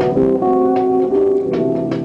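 Live band playing an instrumental passage: held chords and sustained notes over a low bass line, with a sharp percussive hit near the start and another just before the end.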